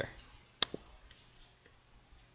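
A single sharp computer mouse click about half a second in, with a fainter second click just after it. The click starts the program building and running.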